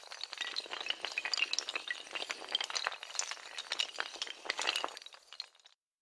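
Sound effect of many hard tiles clattering in quick, irregular succession, like a long chain of dominoes toppling. It cuts off abruptly near the end.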